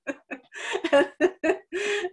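A woman laughing in a run of short chuckles, with a breathy burst near the end.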